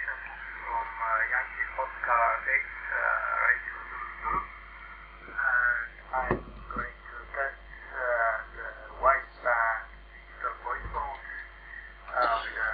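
A man's voice received over a narrow FM radio channel, band-limited and radio-sounding, with a few sharp clicks.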